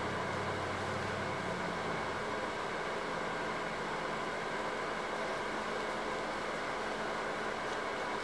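Steady background hum and hiss of room tone at an even level, with no distinct fabric rustles or other events standing out.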